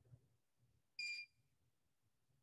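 A single short electronic alert beep about a second in, one steady high tone lasting about a quarter second, sounding as the rate-control display raises a notice that the object pool will go offline; otherwise near silence.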